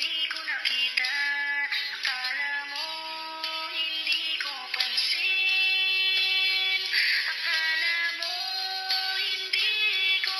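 Autotuned solo voice singing a Tagalog love song over a minus-one backing track, holding long notes that slide between pitches.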